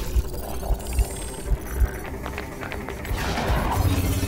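Action film soundtrack: music with several heavy low hits in the first two seconds, then a denser rush of sound effects.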